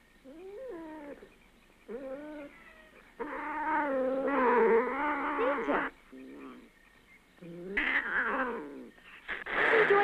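Cat-like caterwauling: about six drawn-out, wavering yowls, the longest and loudest in the middle of the run, the last ones rising again near the end.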